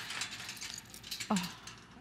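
A few light metallic clicks and rattles from a folding steel wire storage rack as it is handled and rolled on its casters.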